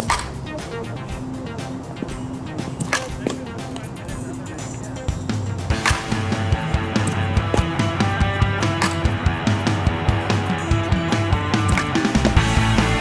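Background music with sharp cracks of a softball bat hitting the ball about every three seconds: at the start, about three seconds in, and just before six seconds. From about six seconds the music becomes louder and fuller.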